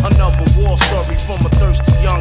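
1990s East Coast hip hop track: a male rapper delivering a verse over a beat with heavy bass and drums.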